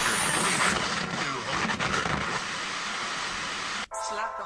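A steady rushing noise with no clear music or speech in it, cutting off abruptly just before the end.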